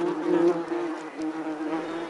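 A steady buzzing drone that wavers in loudness, briefly dipping about a second in.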